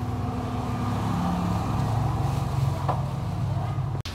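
A steady low engine or motor hum with several held tones, one more tone joining about a second in and fading out near three seconds.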